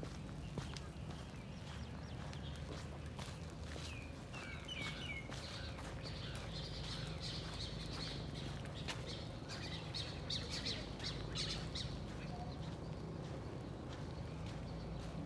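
Small birds chirping: a short run of quick chirps about four to five seconds in, then busier, higher chirping through the middle. A steady low rumble runs underneath.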